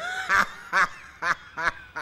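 A man laughing out loud in a rhythmic string of about four short 'ha' bursts, each a little softer than the last.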